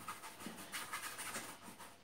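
Bristle brush scrubbing oil paint onto a canvas in a quick run of short strokes, a dry scratchy rasp.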